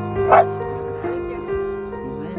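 A dog, the Shiba Inu, barks once about a third of a second in, over steady background music.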